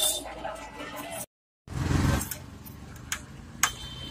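Hands working the brass nipple fitting of a gas stove's auto-ignition unit loose: handling noise with a dull bump about halfway, then two sharp metal clicks near the end.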